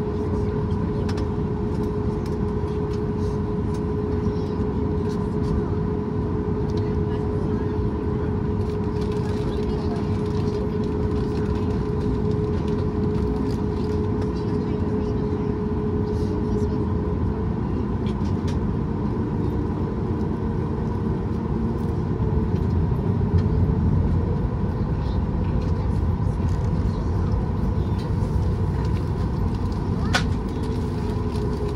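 Cabin hum of a Boeing 737 MAX 8's CFM LEAP-1B jet engines running at idle, with a steady whine over a low rumble. About halfway through the whine's pitch changes, and a little later the sound grows louder for a few seconds as thrust comes up to start the taxi.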